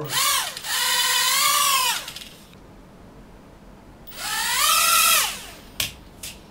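Caged mini toy quadcopter's four small motors spinning up to a high whine, holding for about two seconds and dying away, then spinning up again after a short pause. A sharp knock near the end.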